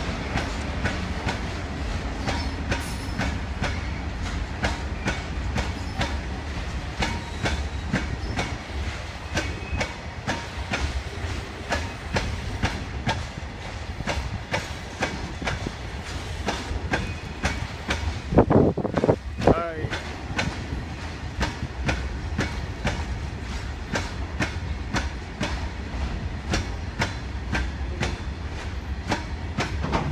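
Goods train's freight wagons rolling past with a steady rumble, their wheels clattering over the rail joints in a fast, regular run of clicks. A brief loud call, like a shout, comes about eighteen seconds in.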